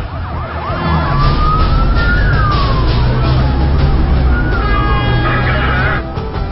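Emergency vehicle siren: quick yelping pitch sweeps in the first second, then slow rising and falling wails, over a steady low rumble.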